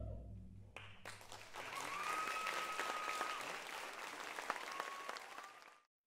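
The low ring of taiko drums dies away. An audience then applauds, with a long high whistle held over the clapping twice. The sound cuts off abruptly near the end.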